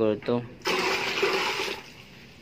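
Water poured from a plastic container into a plastic basin, splashing into the water already there; the pour starts about half a second in and fades near the end.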